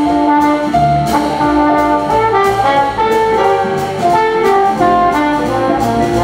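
Traditional jazz band playing, with a trombone carrying the melody in long held and moving notes over a rhythm section of acoustic guitar, double bass and drums.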